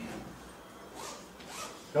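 Three short, soft rustling swishes over quiet room tone, like clothing moving as someone turns, followed by a man's voice starting to speak at the end.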